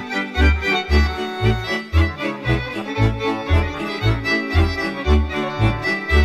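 Instrumental break in a Romanian folk song: an accordion-led band with a bass note pulsing about twice a second, and no singing.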